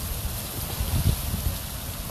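Steady rushing of water flowing through trout-farm tanks, with uneven low rumbling on the microphone.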